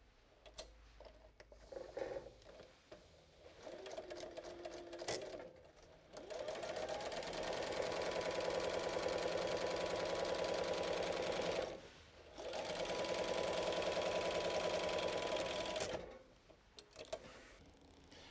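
Sailrite Ultrafeed walking-foot sewing machine stitching a zipper onto vinyl mesh fabric: after a few faint handling sounds it starts about six seconds in, speeds up and runs steadily for about five seconds, stops briefly, then runs again for about four seconds before stopping.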